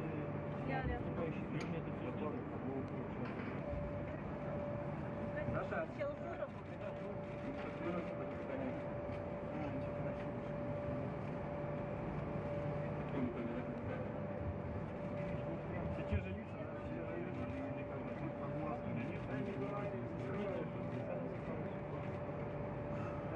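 Steady background hum of equipment in a large hall, with a constant high tone running through it, and faint, indistinct voices now and then.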